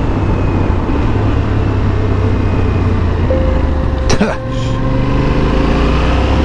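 Yamaha Ténéré 700's parallel-twin engine running at road speed with wind rush over an on-board camera, as the bike slows for a bend. A sharp click about four seconds in, followed by a steadier, rising engine note.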